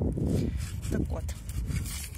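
A cardboard medicine box being handled and opened, with soft rubbing and rustling of card, over a low steady rumble.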